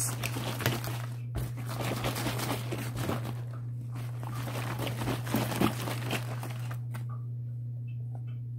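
Plastic jug of homemade pest-spray mixture (water, baking soda, vegetable oil and soap) being shaken hard: the thin plastic crinkling and the liquid sloshing, stopping about seven seconds in.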